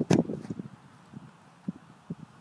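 A kicker's foot strikes a football off a field-goal kicking holder: one sharp thud just after the start, followed by a few soft footsteps on grass.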